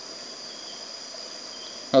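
A steady high-pitched background tone over a faint hiss, unbroken through the pause.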